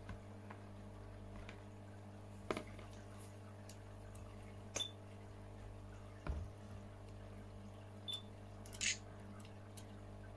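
Faint handling noises: about half a dozen short clicks and taps, spread out, over a steady low hum.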